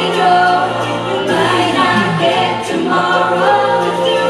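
A group of children singing together into handheld microphones over accompanying music.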